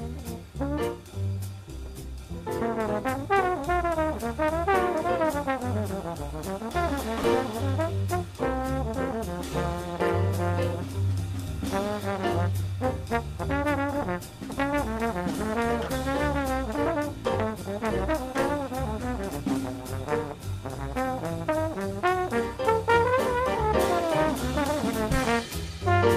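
Jazz trombone solo of quick, winding runs, played over a big band rhythm section of piano, bass and drums.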